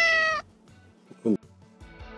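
A domestic cat meowing: one long, even-pitched meow right at the start. Background music comes in near the end.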